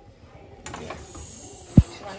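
A steady hiss at the gas stove, where hot pasta is being served from a steaming pan. It starts abruptly about half a second in, and one loud, short, low thump comes near the end.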